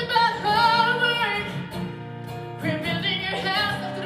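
Female singer holding long sung notes with vibrato over an acoustic guitar. The voice drops out for about a second around the middle, leaving the guitar, then comes back.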